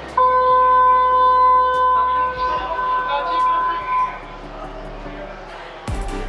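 Railway station departure signal on the platform: a loud, steady electronic tone that starts suddenly and holds for about four seconds, then gives way to quieter platform noise.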